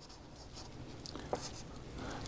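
Felt-tip marker scribbling on paper, faint, as a small area is shaded in with quick strokes, with a few light ticks of the tip about a second in.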